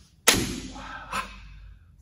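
A single sharp hit about a quarter second in, followed by a tail that dies away over about a second, with a fainter knock just past the middle.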